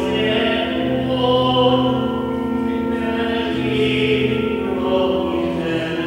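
A church hymn sung during Mass: voices over sustained accompanying chords that shift every second or so.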